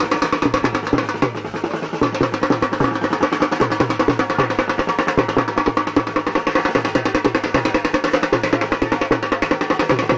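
Loud, fast processional drumming: a steady low beat under a dense roll of rapid strokes, with ringing tones held above it, played for dancing.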